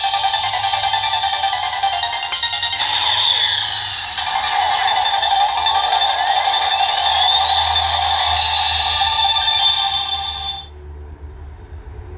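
DX Seiza Blaster toy playing its electronic transformation sound sequence and music through its small speaker, with a rising tone partway through, cutting off near the end. There is no call of "Kani": the toy does not announce the Kani Kyutama for the transformation.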